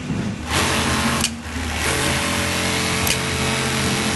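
Industrial sewing machine running fast, starting about half a second in, stopping briefly and then running on steadily, over a low motor hum.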